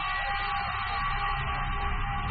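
Steady background hum and hiss with a few faint steady tones, with no distinct events.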